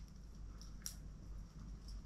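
A disposable lighter being struck while it fails to catch: one sharp click about a second in and a few fainter ticks, over a low steady hum.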